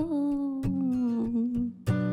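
A woman's voice holds one long note that sinks slowly in pitch over a guitar struck about once a second. The voice stops shortly before the end, and a last guitar strum follows.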